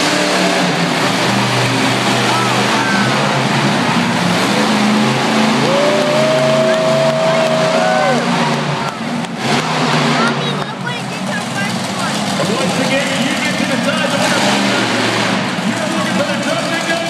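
Monster truck engine running loud and revving as the truck drives around the arena floor, with spectators shouting over it, including one long held yell about six seconds in.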